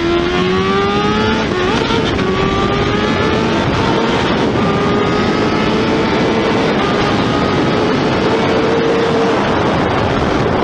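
Sport motorcycle engine pulling hard at high speed in a high gear, its pitch climbing slowly, with one break about a second and a half in, under heavy wind rush.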